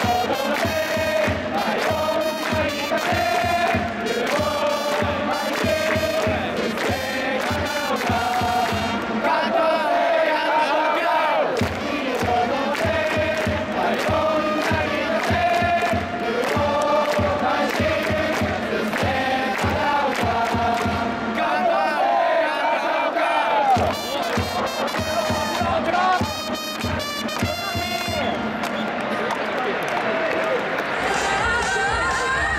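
Japanese pro baseball cheering section: trumpets playing a batter's fight song over a steady drum beat, with fans chanting along. The drum drops out briefly about three-quarters of the way through, then comes back.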